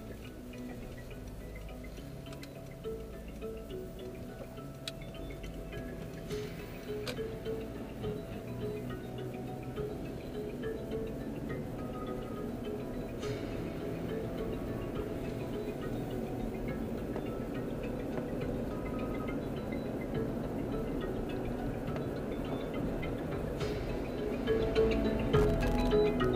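Music with chiming, mallet-like notes playing on the car stereo, heard inside the cabin over low engine and road rumble that grows louder as the car gets under way.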